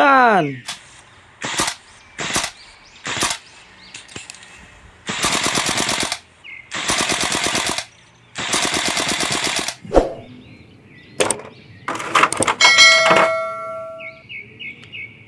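Kalashnikov-pattern (AK) rifle gunfire: three single shots about a second apart, then three bursts of fully automatic fire, each about a second long. A swoosh at the very start, and a click and a bell chime near the end.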